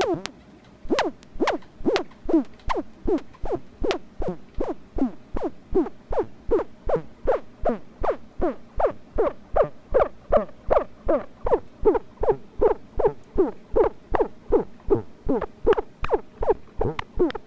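MFOS Noise Toaster DIY analogue synthesizer playing a repeating train of short blips, each a click followed by a quick downward pitch sweep, about three a second, starting about a second in.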